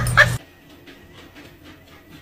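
A dog gives a short high yip just after the start over a low steady hum, and both cut off abruptly. The rest is quiet, with a few faint light ticks.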